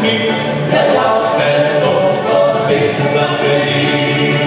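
Male vocal quartet singing together in harmony, amplified through handheld microphones.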